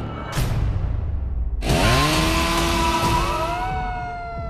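A short burst of noise just after the start. Then, about a second and a half in, a chainsaw starts up loud and revs, its pitch climbing quickly and then holding, with a second rising rev near the end.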